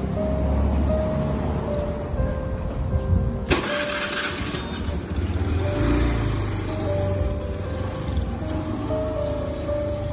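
Background music with held melody notes over a steady low rumble, with a sudden noisy burst about three and a half seconds in that fades over a second.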